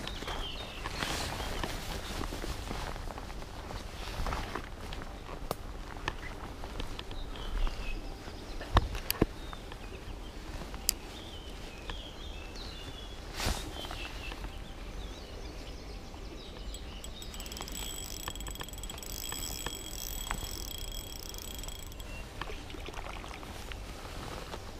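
Riverbank ambience: birds calling over a steady low rumble of wind on the microphone, with footsteps through grass and a few sharp clicks from handling the spinning rod and reel.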